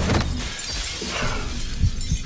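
Glass shattering: a sudden crash at the start, then scattered shards and debris falling, with a low thud near the end.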